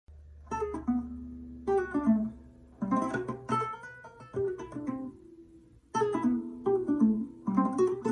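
A ⅝-size nylon-string classical guitar played fingerstyle: short phrases of plucked notes and chords that ring on between them, with a brief pause just before six seconds in and then a busier run of notes.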